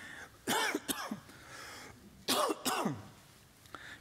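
A man clearing his throat twice, once about half a second in and again just past two seconds, the second time with a steeply falling pitch.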